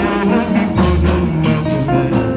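Live choir music with a low bass line and a quick, steady percussion beat of about four strokes a second.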